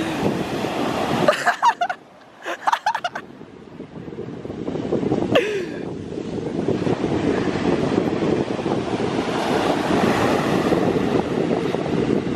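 Ocean surf breaking and washing up the beach, mixed with wind buffeting a microphone that has no windscreen. The rushing dips for a couple of seconds, then builds steadily from about four seconds in.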